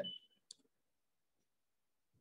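Near silence broken by one short, faint click about half a second in: a stylus tapping the tablet's glass screen.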